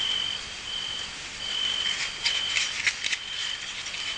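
Crickets chirping in a high, steady trill that breaks off and resumes every second or so, with a few short rattling clicks between about two and three and a half seconds in.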